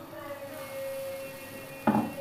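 A steady humming tone in the background, then a single sharp knock of the ladle near the end, as batter is ladled onto the iron tawa.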